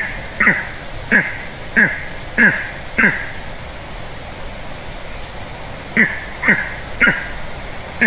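Male golden eagle calling on its nest to show its presence: short calls, each falling in pitch, about one every 0.6 s. There are six in a row, a pause of about three seconds, then three more near the end.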